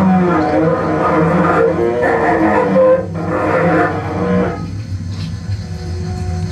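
Bowed cello with live electronics in an experimental improvisation: a dense layer of several sustained pitches that thins out about four and a half seconds in, leaving a low steady drone.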